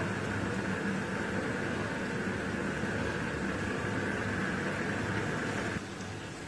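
Vegetable pakodas deep-frying in hot oil in a wok, a steady sizzle that drops off abruptly near the end.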